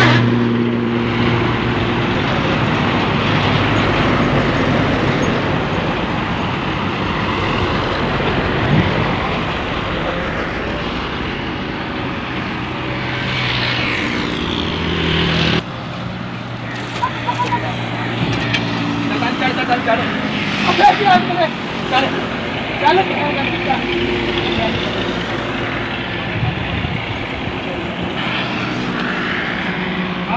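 Diesel engine of a Volvo EW130 wheeled excavator running steadily as it works. The sound changes abruptly about halfway through, and men's voices call out over the engine in the second half.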